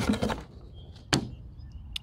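Items from a box being handled and set down on a hard surface: a short rustle, then two sharp taps, one just past a second in and one near the end.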